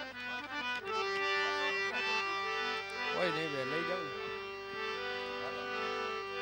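Harmonium playing sustained reed notes and chords, the tune moving in steps from one held tone to the next.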